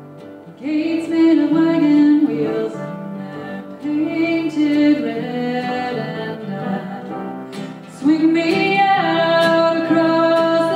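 A woman singing a folk song live, accompanied by her own strummed acoustic guitar and an upright piano. Her sung phrases come in about half a second in, again around four seconds and again around eight seconds in.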